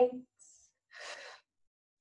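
A woman's audible breath, one soft unvoiced breath of about half a second about a second in, taken between counts while holding a stretch.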